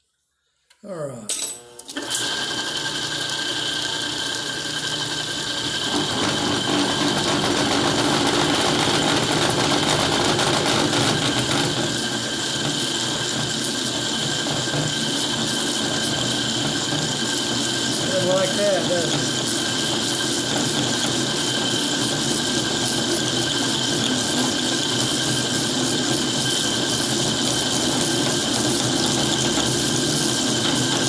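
Metal lathe switched on about a second in, the motor and three-jaw chuck spinning up with a rising whine, then running steadily with a steel bolt turning in the chuck; a steady gear whine runs through, and the noise grows louder for a few seconds in the middle.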